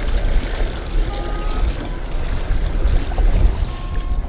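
Small fishing boat under way at trolling speed: steady outboard motor and water noise, with a heavy low wind rumble on the microphone.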